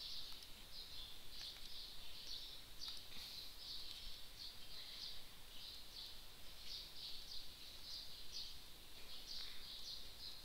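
Faint, steady background chirping from a small animal: short high-pitched chirps repeating about twice a second.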